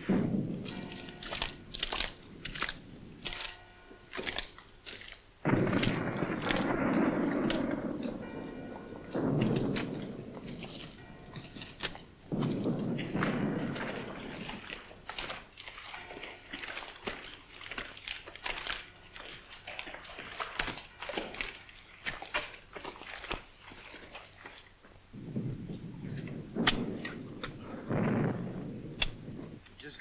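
War-film battle sound effects: a steady run of sharp cracks of small-arms fire, broken by several longer, heavier blasts of shellfire. The first blast comes right at the start, three more follow between about five and fifteen seconds in, and two more come near the end.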